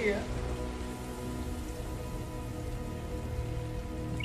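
Steady rain falling, a rain sound effect in an animated episode's soundtrack, with held musical notes and a low rumble underneath.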